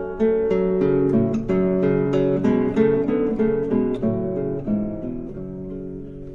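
Instrumental passage of a recorded Yiddish folk song between sung lines: an acoustic guitar picks a melody over chords, growing quieter toward the end.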